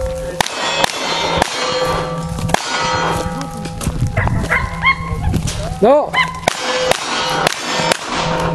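A string of gunshots in cowboy action shooting, roughly one every half second to second, each followed by the ringing of struck steel targets.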